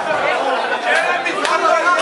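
Crowd chatter: several spectators talking at once around a dance floor.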